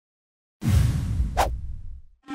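Logo-animation sound effect: a sudden deep whoosh with a low rumble about half a second in, fading away, with a short sharp swish partway through.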